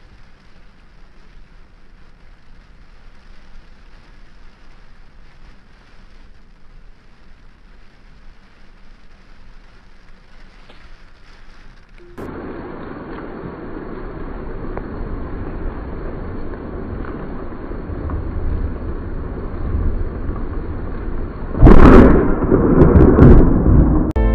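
Steady rain noise that jumps louder partway through and keeps building, then a sudden, very loud thunderclap from a close lightning strike near the end, rumbling on for about two seconds.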